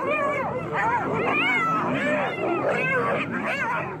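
A pack of spotted hyenas attacking a lioness: many overlapping yelping, giggling cries, each rising and falling in pitch, following one another without a break.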